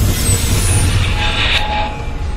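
Logo-animation sound effect: a loud, noisy whoosh over a deep rumble, brightening about halfway through and fading near the end.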